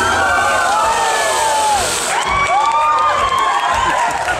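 Theatre audience cheering and whooping, with several long rising-and-falling shrieks. A steady hiss runs under the first two seconds.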